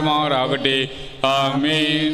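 A man's voice chanting a Malayalam prayer of the Syro-Malabar Qurbana in held, sung notes, with a short break about a second in. A steady low tone sounds underneath.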